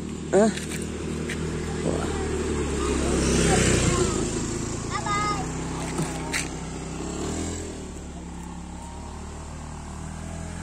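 A motorcycle engine passing by, growing louder to a peak about three to four seconds in and then fading away.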